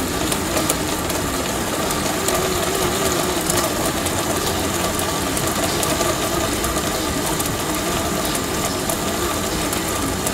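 Pedal-powered bicycle blender running: the pedalled rear wheel spins the blender, giving a steady mechanical whirr with a faint pitch that wavers slightly with the pedalling.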